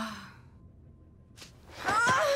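Cartoon character voices without words: a short sigh falling in pitch at the start, a sharp knock about a second and a half in, then a strained grunt of effort near the end as a girl hauls herself up a wall.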